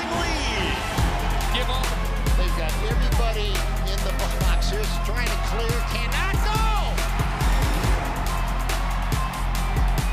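Background music with a steady beat and held bass notes, with a voice rising and falling over it.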